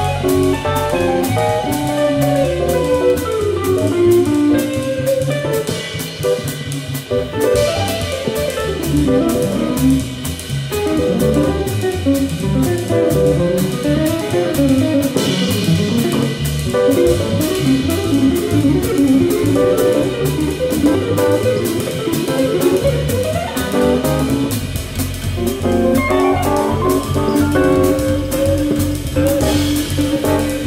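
Jazz quartet playing an instrumental jam live: guitar lines over drum kit and bass, with cymbals keeping a steady pulse.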